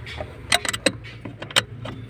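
Irregular sharp metallic clicks and taps of parts and tools handled at the clutch pedal bracket under a car's dashboard while a clutch master cylinder is fitted, over a low steady hum.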